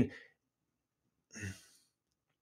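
A man's short, soft breath, a sigh-like exhale about one and a half seconds in, after the trailing end of a spoken word; quiet otherwise.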